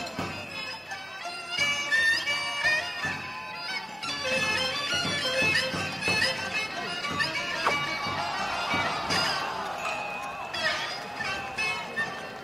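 Henan opera (Yuju) instrumental accompaniment: a shrill reed wind instrument plays a bending, ornamented melody, punctuated by sharp percussion strokes.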